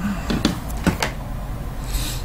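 A few light clicks and knocks from hands handling a stack of shrink-wrapped card boxes on a table, over a low steady hum.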